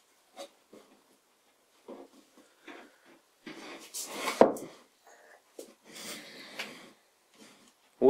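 Taped-together wooden staves knocking and clicking against one another and scraping on the workbench as the strip is rolled up into a cylinder, with a louder scraping rush about four seconds in and another about six seconds in.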